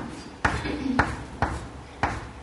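Chalk tapping on a blackboard while lines are drawn: three sharp taps, roughly half a second apart.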